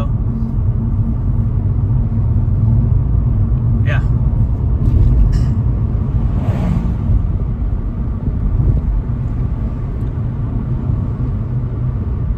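Steady low road and engine rumble inside a moving car's cabin, with a brief rise of noise about six and a half seconds in as an oncoming vehicle passes.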